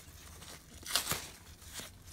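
A paper towel being handled and torn, with a short rustling tear about a second in and a fainter one near the end.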